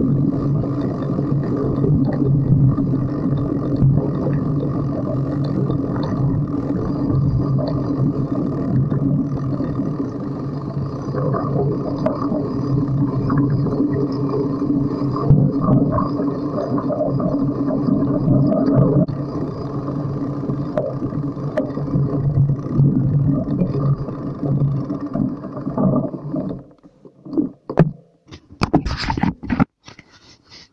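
Motorcycle engine running steadily under load while climbing a steep track, then cut off suddenly near the end, followed by a few sharp knocks.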